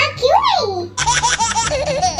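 A voice slides up and then down in pitch. About a second in it gives way to giggling laughter in quick, short pitched bursts.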